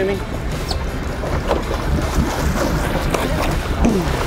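Steady low rumble of a sport-fishing boat's engine running, with wind and water noise around the hull.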